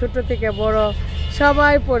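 A woman's voice, with long drawn-out syllables, over a steady low rumble underneath.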